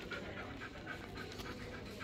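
Quick rhythmic panting, about four breaths a second.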